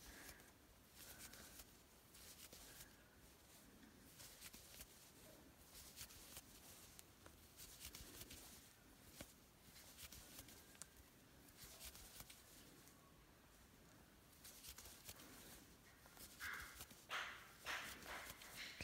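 Near silence with faint scattered ticks and rustles of a crochet hook working single crochet stitches in yarn, a little louder for a moment near the end.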